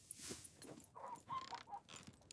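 Faint chickens clucking, a few short clucks about a second in, over soft stable noise.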